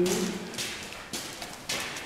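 Footsteps on a debris-strewn hard floor, a few short knocks about half a second apart.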